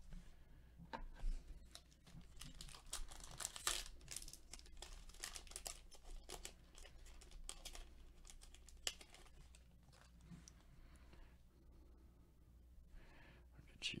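Plastic-foil trading-card pack wrapper being torn open and crinkled, with cards handled and shuffled in gloved hands. It is a quiet, irregular run of crackles and snaps, busiest in the first half and sparser later.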